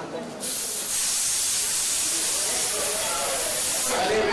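Aerosol party snow-spray can hissing in one long, steady spray that starts about half a second in, with voices under it near the end.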